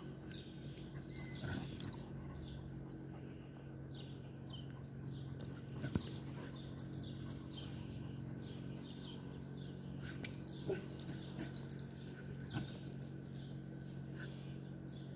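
Dogs at rough play, with a few short sharp vocal sounds standing out about six seconds in and twice near the end, over steady chirping birdsong and a low hum.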